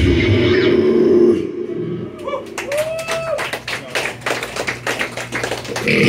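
A live slam death metal song ends about a second in, the heavy electric guitar and drums cutting off, followed by scattered clapping and a few shouts from a small crowd.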